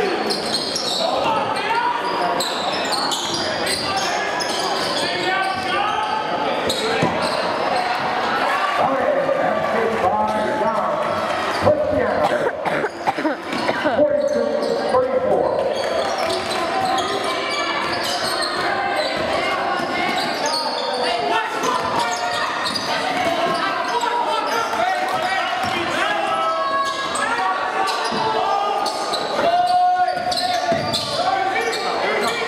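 Gymnasium sound during a basketball game: continuous indistinct crowd voices, with a basketball bouncing on the hardwood floor.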